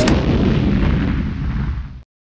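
A single deep boom hit with a long rumbling tail that fades over about two seconds, then cuts off suddenly.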